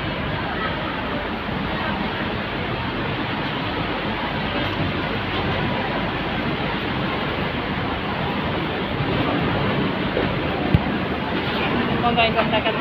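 Steady noise of a busy street with traffic, with wind rushing on the microphone, and one sharp click near the end.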